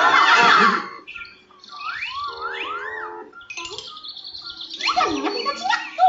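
Children's cartoon soundtrack played from a TV: a loud, busy first second, then music with chirping, whistle-like notes that glide up and down, and another loud sweep of sound near the end.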